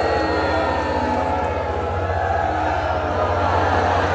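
A man speaking aloud to a large crowd of extras, with a steady low hum underneath.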